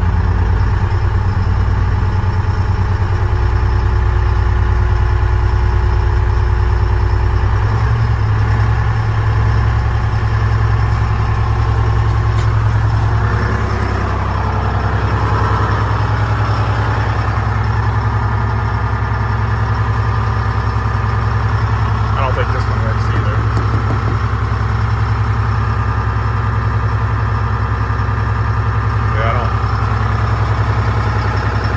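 Two-stroke Detroit Diesel in a 1976 fire truck running at idle. Its speed steps up a few seconds in and again about eight seconds in, then holds steady at a fast idle, so the air compressor builds brake air pressure faster.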